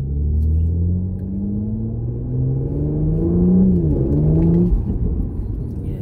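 Porsche Macan GTS's twin-turbo V6 with the sports exhaust open, heard from inside the cabin, accelerating hard from a standstill in Sport Plus mode. The engine note climbs, dips quickly at a gear change about four seconds in, climbs again, then falls away near the end; it sounds responsive and lovely.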